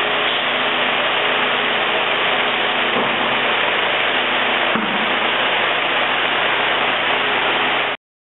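A steady, loud hiss with a faint hum under it, cutting off suddenly at the end, with two faint knocks about three and five seconds in.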